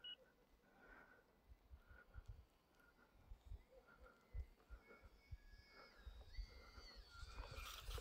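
Near silence: the faint high whine of a distant UMX Twin Otter's small electric motors as the RC plane comes back in, then a short rise of noise near the end as it touches down and slides on the snow.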